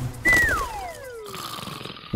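Cartoon sound effect: a single whistle-like tone that glides steadily down in pitch over about a second, followed by a faint hiss.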